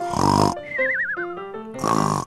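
Cartoon snoring sound effect over background music: a rasping snore, then a wavering whistle that falls in pitch, then a second snore near the end.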